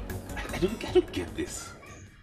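A few short, high animal cries in quick succession, mixed with faint clicks, fading near the end.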